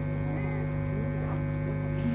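Steady electrical mains hum from the microphone and sound system during a pause in the speech.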